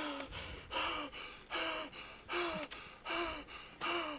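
A man breathing hard through an open mouth in a rhythmic series of about five short voiced gasps, each falling in pitch, with quieter breaths between them.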